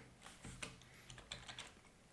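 Faint computer keyboard typing: a few irregular keystrokes.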